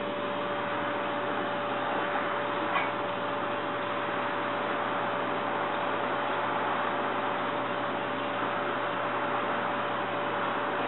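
Steady background hiss with a steady hum-like tone running under it, and one small click about three seconds in.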